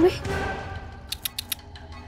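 Soft dramatic background score with a quick run of four or five sharp, high clicks about a second in.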